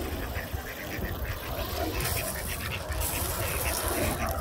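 Mallard ducks on the water giving many short, scattered quacks over a steady low rumble.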